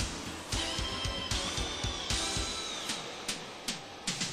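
Background music with a steady drum beat and a high, held lead line that bends in pitch.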